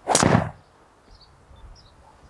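Golf driver striking a teed ball into a practice net: one sharp hit that dies away within about half a second.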